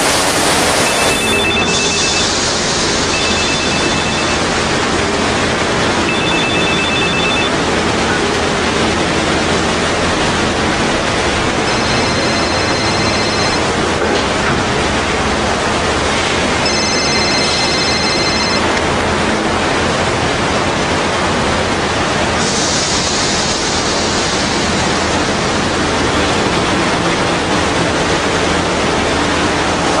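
High-pressure car-wash wand spraying with a steady hiss. A mobile phone rings over it: four short trilling rings in the first several seconds, then two longer, higher-pitched rings.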